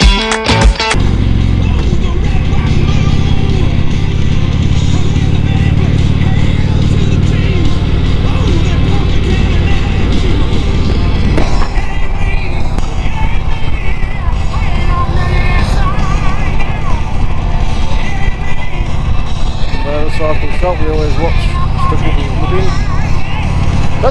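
Harley-Davidson touring motorcycle's V-twin engine running steadily while cruising, heard with wind noise on the bike-mounted camera. A burst of guitar music cuts off about a second in.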